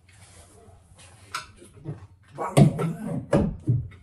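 Handling clicks and knocks as a manometer and its rubber tube are set against the gas meter on a wall: one sharp click about a second in, then a cluster of loud knocks and thuds near the end.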